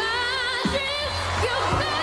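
A boy singing into a microphone with a wavering vibrato over backing music, the melody held on sustained notes.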